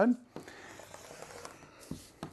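Rotary cutter rolling through paper-backed fused fabric on a cutting mat: a faint, steady scratchy rasp, with a short knock about a third of a second in and another near the end.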